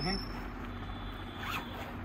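The zipper of a clear plastic bedding-set packaging bag being pulled open: one short zip about one and a half seconds in.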